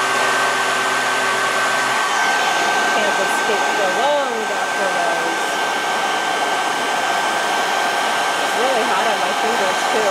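Handheld hair dryer blowing hot air steadily onto a vinyl action-figure head to soften it, with a thin steady whine over the rush of air. A low hum under it drops out about two seconds in, and a few short wavering tones come and go.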